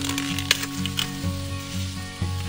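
Crackling rustle of corn leaves and husks as a ripe ear is pulled from a waxy-corn plant, with a few sharp snaps, over background music with held notes.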